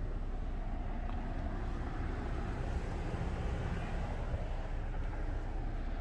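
Steady low background rumble in a car's cabin, even throughout, with no distinct events.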